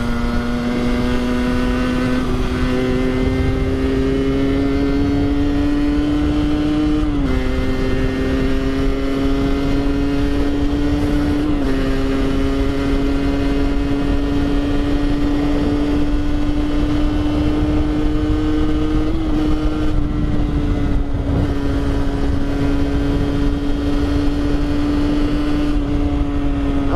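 Rieju MRT 50cc two-stroke motorcycle engine, with its stock exhaust derestricted, running under steady throttle while riding. Its buzzing note climbs slowly in pitch and drops briefly about seven and eleven seconds in.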